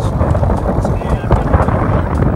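Wind buffeting the microphone of a moving bicycle, a loud, uneven low rumble.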